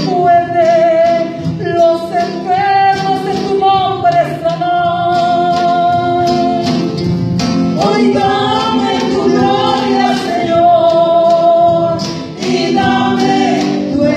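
Live worship praise song: several voices singing together through microphones and a PA, with sustained held notes over a band with drums and cymbals.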